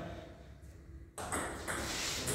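Table tennis ball being served and struck in a rally, clicking off the bats and table: a few sharp ticks starting about a second in, after a moment of quiet.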